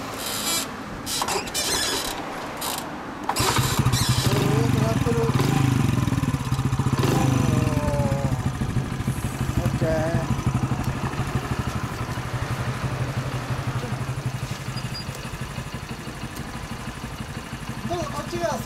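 Honda Super Cub with a 75cc bored-up four-stroke single and Takegawa exhaust being kick-started: a few seconds of kicking, then it catches about three and a half seconds in and settles into a steady idle.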